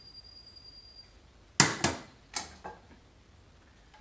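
Four sharp metal knocks and clinks in just over a second, about halfway through: a small stainless-steel saucepan knocking against the pan and the steel stovetop as it is put down. A faint steady high tone comes before them.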